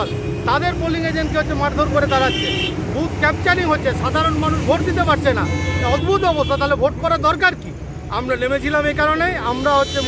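A man speaking Bengali without pause over steady road-traffic rumble, with a couple of short car-horn toots in the background.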